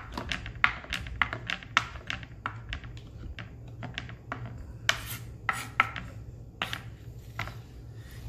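Kitchen knife chopping soft diced tomatoes on a wooden cutting board: irregular knocks of the blade on the board, about two a second.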